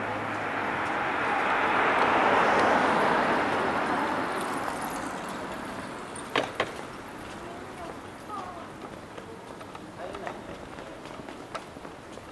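A vehicle passing by: a broad rushing noise that swells over the first two or three seconds and fades away by about six seconds in. Two sharp clicks follow, with faint voices in the background.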